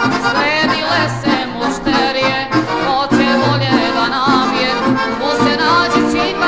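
Recorded folk song in the Yugoslav narodna style, with an accordion carrying an ornamented melody over a pulsing bass line.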